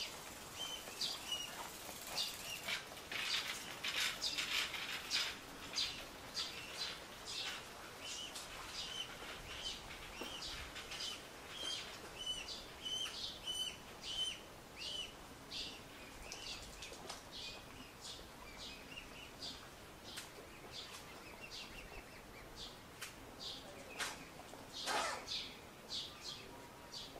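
Mute swan cygnets peeping: short, high calls repeated again and again, with sharper chirps among them. A brief louder rustle comes near the end.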